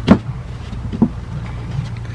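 Plywood board knocking against the aluminium ladder frame as it is set and shifted into place: a sharp knock just after the start and a lighter one about a second in, over a steady low hum.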